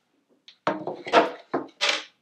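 Wooden objects being handled: a few knocks and scrapes as a wood-framed chalkboard is put down and a wooden box is pulled across the floor, starting about half a second in.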